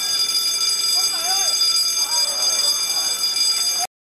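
Short shouts from footballers on the pitch, three calls about a second apart, over a steady high-pitched whine of several held tones. The sound cuts off suddenly near the end.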